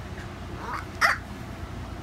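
A toddler's two short high-pitched squeals of play: a small one, then a louder one about a second in.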